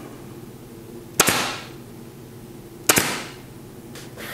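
Porter-Cable pneumatic upholstery stapler firing two staples about a second and a half apart through the non-woven dust cover into the underside of a stool seat. Each shot is a sharp crack with a short hissing tail.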